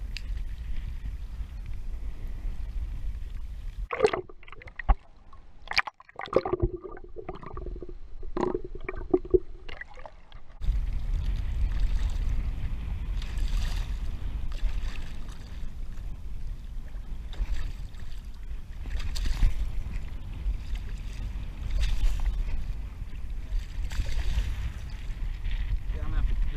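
Water splashing and sloshing against a kayak as a large hooked stingray thrashes at the surface beside it, with wind rumbling on the microphone. From about four to ten seconds in, the wind noise drops away and there is a spell of sharp clicks and knocks.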